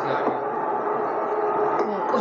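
Televised cricket broadcast playing in the room: a steady wash of crowd noise with faint commentary underneath.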